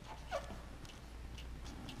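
Felt-tip marker (Sharpie) scratching and squeaking on paper as letters are written, with one short falling squeak a little after the start, over a low steady hum.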